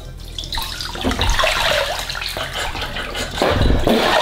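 Liquid poured from a bottle splattering onto a person's head and into bathwater, growing louder about a second in. Near the end, heavier splashing of bathwater as the person jerks upright in the tub.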